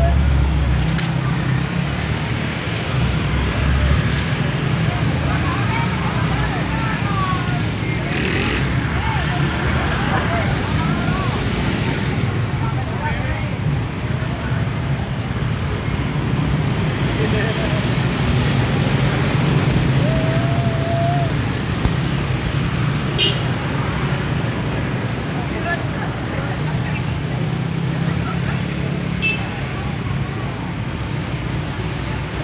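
Steady roadside traffic: car and motorcycle engines running and passing close by, with indistinct voices of people in the background.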